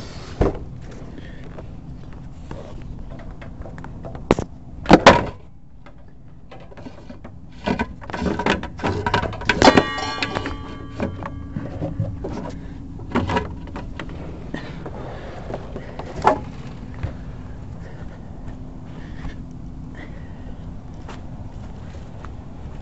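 Irregular knocks, clatters and rustling as a coiled air hose and the camera are handled and carried, loudest about five and ten seconds in, over a faint steady low hum.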